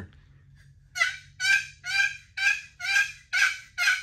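Wooden turkey box call worked back and forth to make a hen turkey yelp: a run of about eight short, evenly spaced notes, beginning about a second in.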